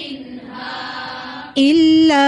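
Quranic recitation in melodic chanted style. A softer, blurred stretch of voice gives way, about one and a half seconds in, to a single loud, clear voice starting a long held note that wavers slightly in pitch.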